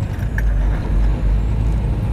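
Semi truck heard from inside the cab while driving, a steady low engine drone and road rumble.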